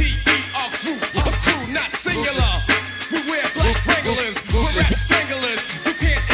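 Hip hop music: a rapper's voice over a beat with a heavy, regular bass kick and crisp high percussion.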